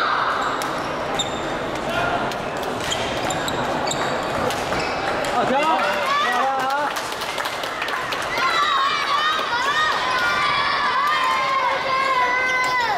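Badminton hall sounds: sharp clicks of rackets hitting shuttlecocks across several courts, with quick squeaks of shoes on the wooden court floor, over a background of voices.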